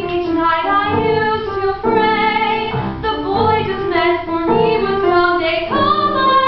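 A young woman singing a musical-theatre song solo over instrumental accompaniment, with held notes carrying a vibrato.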